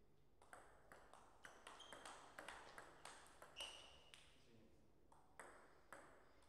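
Table tennis rally: the ball clicks off the rackets and the table in quick succession for about three seconds. A short high squeak follows, then a few single clicks near the end.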